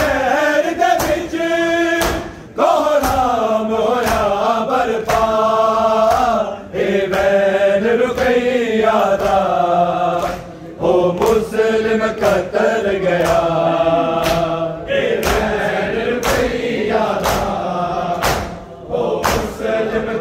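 Men chanting a noha, an Urdu lament, with a lead voice and a chorus. Regular hand strikes on bare chests (matam) keep a steady beat under the singing, which pauses briefly several times.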